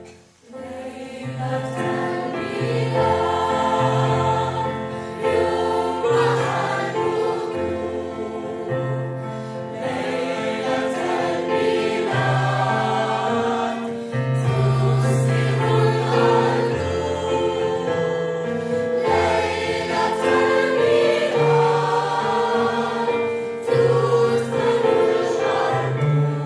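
Mixed choir of children and adults singing a Christmas song in unison, accompanied by piano with repeated low bass notes. The music pauses briefly just after the start, then the voices come in and carry on steadily.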